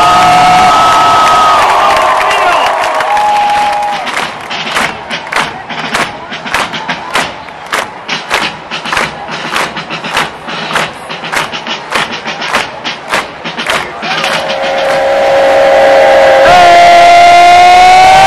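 College football student section: a loud held yell, then clapping in unison at about two to three claps a second, then a rising, sustained yell for the last few seconds.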